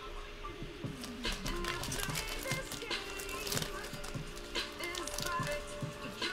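Quiet background music playing, with short clicks and rustles from trading cards in plastic holders and sleeves being handled.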